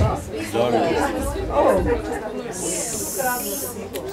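Low talking voices in a large room, with a steady high hiss lasting about a second and a half in the second half.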